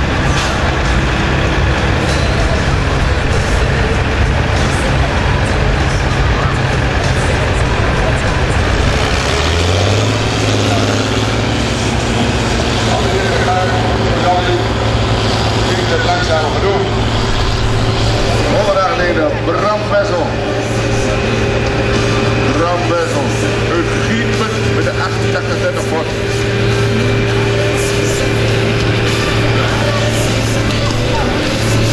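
Farm-stock diesel tractor engines working under full load while pulling a weight sled, a steady low drone that settles on a different pitch about ten seconds in.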